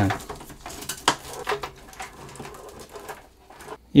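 Light clicks and rustling of power-supply cables being pushed into a PC case while the case is handled.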